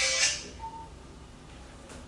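Music-like electronic tones with a high, ringing top fade out about half a second in. A brief single beep follows, then quiet room tone.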